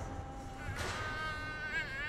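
Protesters singing together, holding a long high note that wavers near the end.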